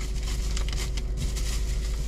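Close chewing of a crispy chicken wing, soft irregular crunches and wet mouth sounds, over a steady low hum inside the car cabin.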